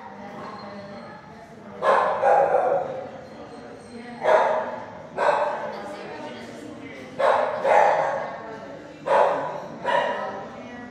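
Dogs barking in a shelter kennel block: a loose series of loud barks, a second or two apart, beginning about two seconds in, each trailing off in echo.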